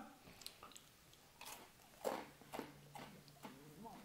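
Faint close-mouthed chewing of a crisp wafer ice cream cone, with small scattered crunches. A soft, steady, low closed-mouth hum comes in about halfway through.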